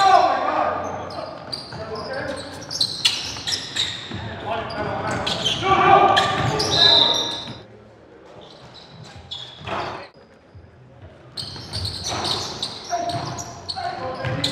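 Basketball play on a gym's hardwood floor: the ball bouncing and sharp knocks ringing in a large hall, with players' shouts. It goes quieter for a few seconds past the middle, then the bouncing and voices pick up again near the end.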